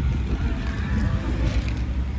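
Steady low rumble of outdoor road-traffic noise, with no other distinct event standing out.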